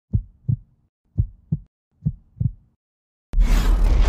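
Heartbeat sound effect: three double thumps, each a lub-dub pair, about a second apart. A sudden loud low boom cuts in shortly before the end.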